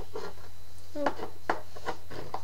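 A steady low electrical hum, with a few short clicks and brief voice sounds over it, the sharpest about a second in and again half a second later.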